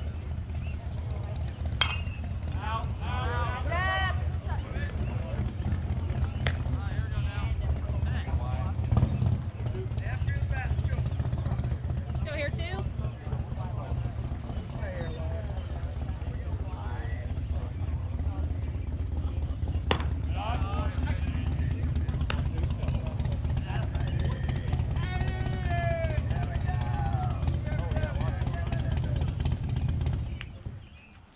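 Voices shouting and calling out in short bursts around a baseball field, over a steady low rumble. A few sharp knocks come through, one about two seconds in and one about twenty seconds in.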